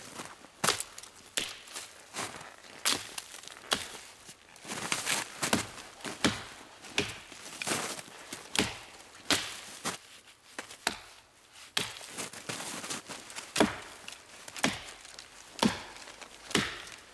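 Wetterlings Backcountry Axe delimbing a downed tree: a steady series of sharp chops into the branches, about one a second.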